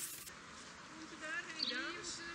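Birds singing outdoors, with quick warbling, sweeping calls from about a second in, over a faint voice.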